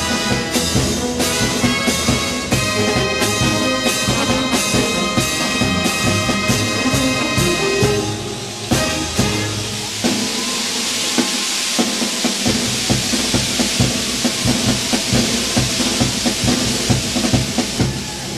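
A brass band plays a marinera norteña over a steady drum beat. About eight seconds in, the brass lines drop back and a loud, even wash of crowd noise rises over the continuing beat.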